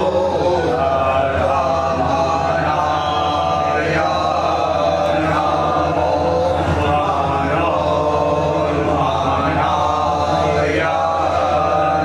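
Voices chanting a Hindu devotional mantra in continuous phrases over a steady low drone.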